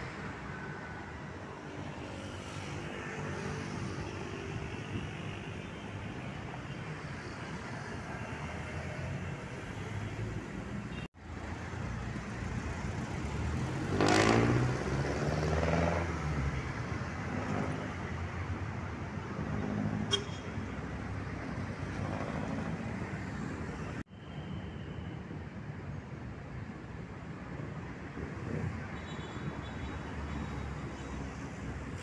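Street traffic noise: a steady background of vehicles on the road, with one vehicle passing louder about midway. The sound cuts out briefly twice.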